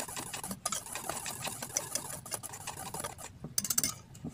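Wire whisk stirring a dry flour and cornstarch breading in a stainless steel bowl: quick, irregular ticks and scrapes of the wires against the metal, with a denser flurry near the end.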